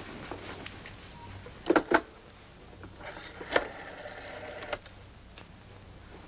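Telephone handset lifted off its cradle with two sharp clicks. A second or so later comes a rapid, even run of clicks lasting about a second and a half, like a rotary dial spinning back while calling the operator.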